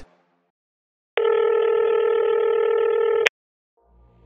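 Telephone ringback tone: one steady ring burst of about two seconds, with the narrow, thin sound of a phone line, as a call is placed and then picked up.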